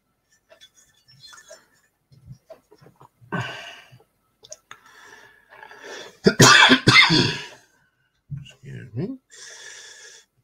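A man coughing loudly, a few hard coughs in quick succession about six seconds in, with short breaths and mutters around them.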